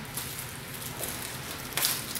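Crackly rustling of a cloth-wrapped bar of soap being handled, with a sharper rustle shortly before the end.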